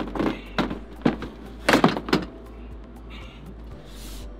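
A heavy lead-acid golf cart battery being wrestled out of its compartment: a handful of hard knocks and thunks in the first couple of seconds, the loudest near the middle, then quieter handling.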